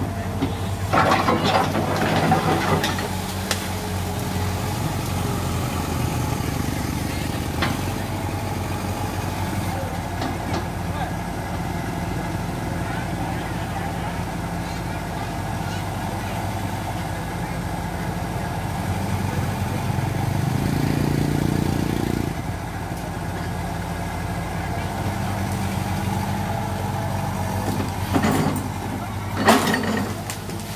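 Kobelco Yutani SK045 mini excavator's diesel engine running steadily under hydraulic load while clearing trees and brush. Rough, loud bursts of noise come from the work about a second in and again just before the end, and the engine works harder for a couple of seconds about twenty seconds in.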